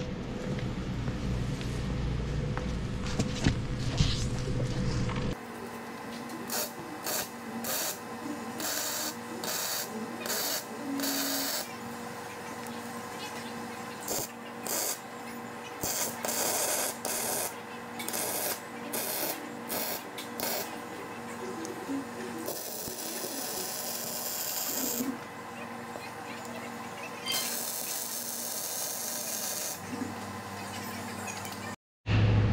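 Electric arc welding on a steel frame. The arc crackles in a string of short tack-weld bursts, each a second or less, then runs for two longer welds of a few seconds near the end. Before the welding starts, the first five seconds hold a steady low rumble.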